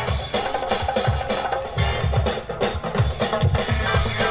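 DJ-played music with a heavy drum beat, kick drum and snare, coming over a loudspeaker.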